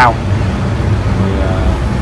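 A steady low rumble runs under a man's voice, which finishes a word at the start and murmurs faintly partway through.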